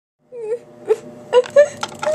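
A girl's voice fake-wailing and sobbing in short, wavering cries, acting out a grieving toy character.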